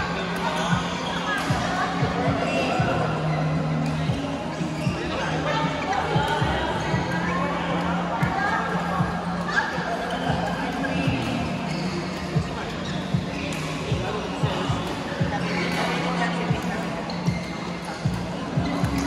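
Badminton rackets striking shuttlecocks across several courts in a large sports hall: many sharp hits at irregular intervals, over background chatter and music.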